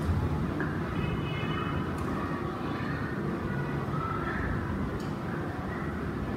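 Classroom background noise: a steady low rumble with faint, far-off voices.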